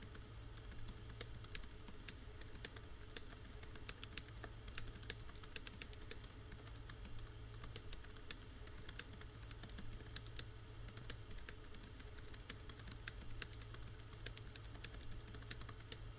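Faint, fast, irregular typing on a computer keyboard, a steady patter of key clicks, over a low steady hum.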